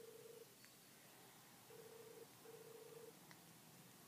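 Faint telephone ringback tone heard through a smartphone's speaker while an outgoing call rings: a low steady tone in pairs of short rings, with one ring ending just after the start and another pair about two seconds in.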